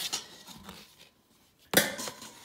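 Camping cook-set plates being handled inside a metal cooking pot: a few light knocks, then one sharp clatter with a brief metallic ring near the end.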